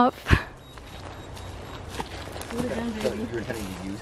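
Footsteps on dry leaf litter along a trail, with one sharp thump just after the start. Faint voices come in during the second half.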